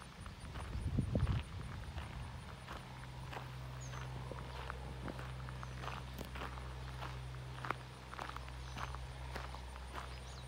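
Footsteps of a person walking across a mown grass lawn, about two steps a second. A brief low rumble about a second in is the loudest moment, and a steady low hum runs underneath.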